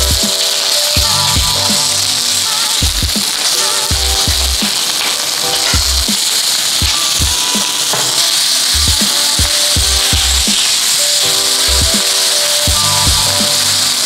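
Impossible plant-based ground meat frying in oil in a hot stainless steel pan, a steady sizzle that holds while it is broken up with a spatula. Background music with a regular beat plays over it.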